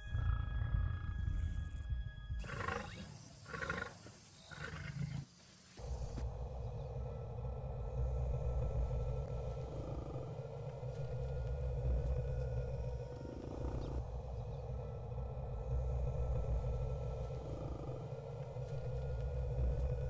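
A deep, steady low rumble, like a soundtrack drone or a low animal roar, with a soft swell every three to four seconds. It follows a few seconds of uneven sound that break off briefly.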